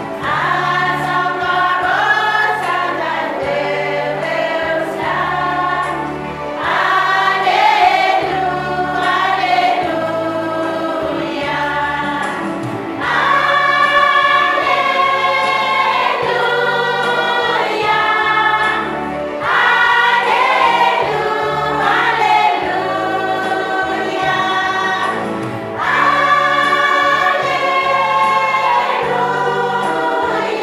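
A choir singing in chorus over electronic keyboard accompaniment with a steady bass line, the singing swelling louder with each phrase about every six seconds.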